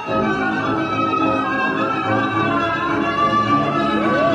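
Tango orchestra music with violins to the fore, playing steadily.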